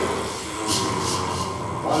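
Gourd shaker rattled in a few quick shakes a little under a second in, over a steady low drone and other quiet sounds from a small group improvising on hand-held instruments.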